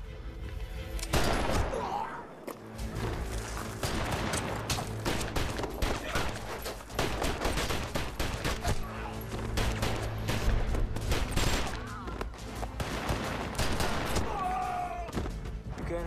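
Automatic rifle fire in long, rapid bursts, starting about a second in, with a music score underneath.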